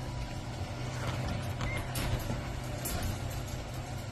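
A steady low mechanical hum with a few faint, short clicks and scuffs.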